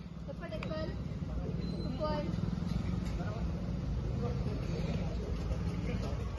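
Scattered voices of players and onlookers talking and calling across an open-air court, over a steady low rumble.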